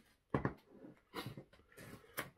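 A man's short breathy gasps and whimpering noises while he struggles with the burn of an extremely hot scorpion pepper sauce. The first is a sharp catch of breath about a third of a second in, followed by fainter ones.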